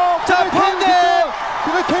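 Excited male voices shouting, with rapid rising and falling pitch.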